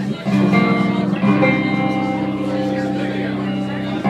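Live band playing an instrumental passage between sung lines, with guitar chords held under it. The held chord shifts at the start and again about a second in.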